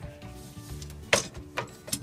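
A sharp plastic clack about a second in and a smaller one near the end as the Miele dishwasher's third rack is lifted out of its rails, over soft background music.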